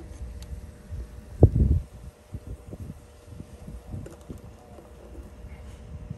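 Handling noise from hands working meter probes on a capacitor: a low thump about one and a half seconds in, then light taps and rustles, over faint wind on the microphone.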